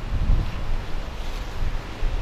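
Wind buffeting the camera microphone on an open roof, an uneven low rumble that rises and falls in gusts.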